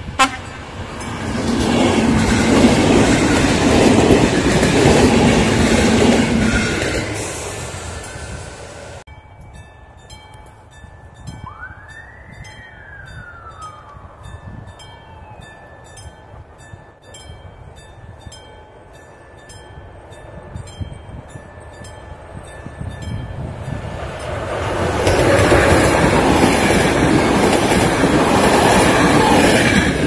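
A passenger train passing close by, loud for several seconds and then fading. After an abrupt cut, steady fast ticking and one brief rising-then-falling tone are heard in a quieter stretch. Then a ZSSK class 163 electric locomotive hauling a passenger train approaches and passes loudly near the end, its wheels clattering over the rails.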